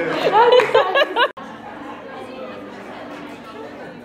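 Excited voices with rising exclamations for about the first second, then an abrupt cut to quieter background chatter of a crowd in a room.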